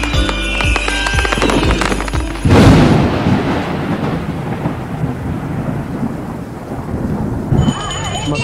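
Intro music with a steady beat, broken off about two and a half seconds in by a sudden loud thunderclap sound effect. A rumble and rain-like hiss follow and slowly die away.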